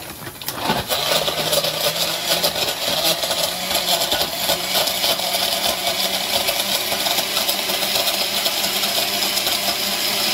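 Countertop blender starting up and running steadily, blending a smoothie of frozen blueberries, pineapple and ice cubes, with a constant clatter of frozen pieces against the jar. It starts about half a second in and builds to full speed within a second or two.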